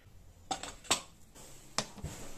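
A few sharp clicks and taps of hard plastic being handled: three distinct clicks, about half a second in, just under a second in and near the end, the middle one the loudest.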